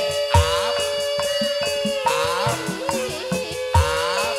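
Live Sundanese jaipongan gamelan music: a held, slightly wavering melody line with sliding ornaments over ringing metallophone notes. Sharp kendang drum strokes come about a third of a second in and again near the end.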